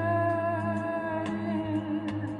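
A male singer's high falsetto holding one long note that sags slightly in pitch, sung live over a steady low bass line with a few soft drum ticks.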